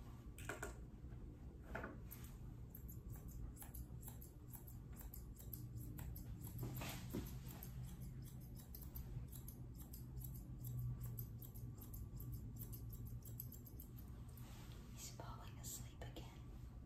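Grooming scissors snipping through a poodle puppy's coat: a quick run of soft clicks, thickest in the middle of the stretch, over a low steady hum.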